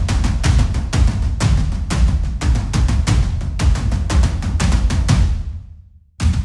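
Sampled, heavily processed tom ensemble from the Colossal Hybrid Drums virtual instrument, played as a rapid run of hits heavy in the low end. The last hits ring out and fade away near the end.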